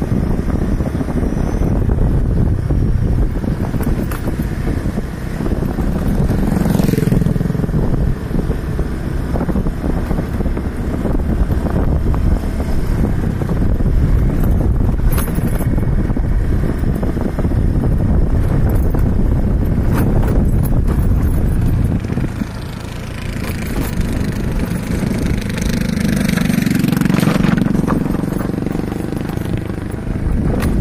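Motorcycle engine running steadily while riding along a rough, cracked concrete road, with wind rumbling on the microphone. The sound drops briefly about two-thirds of the way through, then picks up again.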